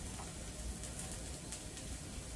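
Chicken breast pieces searing in a hot cast iron skillet: a faint, steady frying sizzle with small crackling pops.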